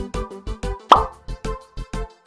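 Background music with a steady beat, and a single rising plop about a second in, the loudest sound.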